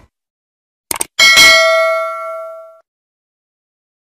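Subscribe-button animation sound effect: a quick pair of mouse clicks, then a single bright bell ding that rings and fades out over about a second and a half.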